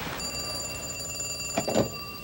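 Telephone ringing: one long ring with a fine trill, starting just after the beginning and lasting nearly to the end. A brief voice cuts in over it near the end.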